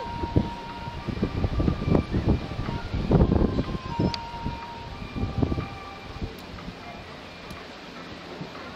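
Wind buffeting the camera microphone in irregular gusts, heaviest about three seconds in and dying down after about six seconds.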